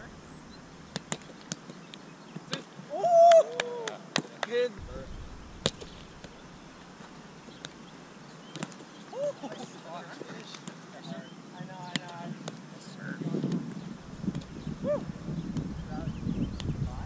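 Roundnet (Spikeball) rally: a dozen or so sharp slaps and taps, hands hitting the ball and the ball bouncing off the net, spaced unevenly. A short shout about three seconds in is the loudest sound. Wind rumbles on the microphone near the end.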